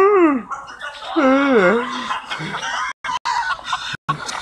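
A person's voice making drawn-out wordless wailing calls, the pitch swooping up and down, twice in the first two seconds. The sound cuts out briefly twice about three seconds in.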